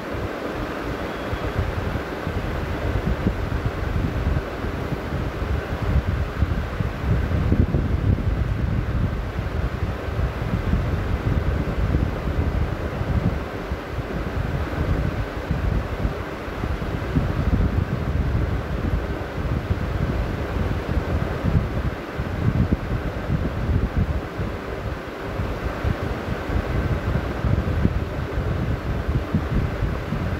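Wind buffeting the microphone: a loud, gusty low rumble that rises and falls in surges.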